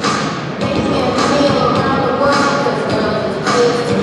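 A gymnast's balance beam dismount, landing with a thud on the mat, heard over music and crowd voices filling a large hall.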